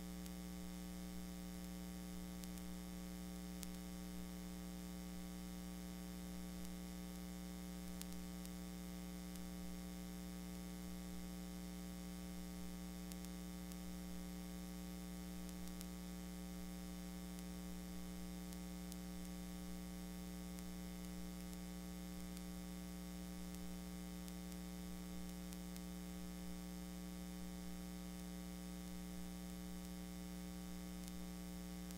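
Steady electrical mains hum with a faint buzz and hiss, unchanging throughout, with a few faint clicks.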